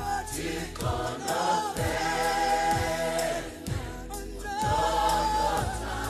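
South African gospel song: a choir singing, with a low beat thumping about once a second.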